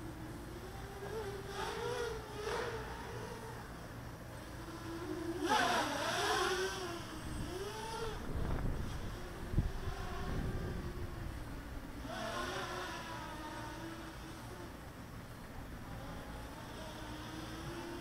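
EMAX Nighthawk Pro 280 racing quadcopter on DAL 6040 props buzzing overhead, the pitch rising and falling as the throttle changes, with a louder punch about six seconds in. A low rumble comes in around the middle.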